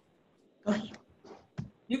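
Brief, hesitant fragments of a woman's voice between short silences.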